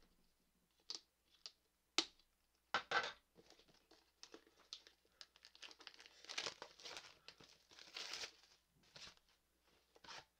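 Plastic shrink-wrap being torn and peeled off a cardboard box, in faint, scattered crinkles and snaps. There is a sharper snap about two seconds in, and a longer run of crinkling in the second half.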